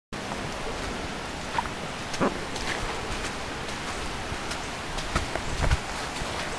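Steady rain falling, with scattered sharp drop taps and a louder low bump near the end.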